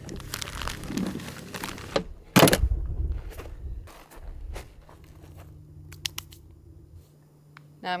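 The plastic parts of a Nature's Head composting toilet being handled and fitted back together: crinkling and rustling, then a single loud clunk about two and a half seconds in, followed by scattered light clicks and knocks.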